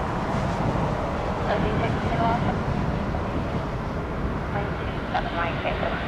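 Steady low rumble of aircraft noise, with faint air traffic control radio voices coming and going over it.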